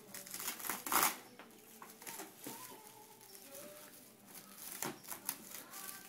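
Plastic cling wrap crinkling and rustling as bundles of wooden skewers are handled and wrapped, in irregular bursts, the loudest about a second in.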